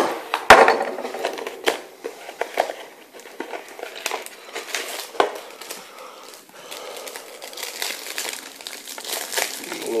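Packaging being handled: a cardboard trading-card box gives a few sharp snaps in the first couple of seconds, the loudest about half a second in. Then the foil wrapper of a card pack crinkles as it is torn open.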